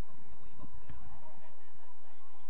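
Distant shouts and calls of footballers carrying across an outdoor pitch, over a low irregular rumble of wind on the microphone.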